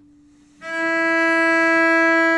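A cello sounding one long bowed note, the E above middle C (top line of the tenor clef), which starts about half a second in after the fading ring of the note before it.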